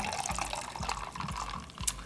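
White Claw hard seltzer poured from a can into a tumbler of ice: a steady fizzing pour with crackling ice, and a small click near the end.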